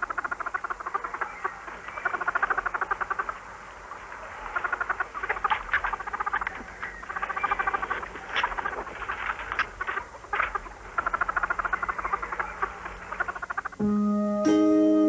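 Male European mink cooing in courtship: bouts of fast, pulsing trills a second or two long, repeated many times, with a few short sharp squeaks among them in the middle.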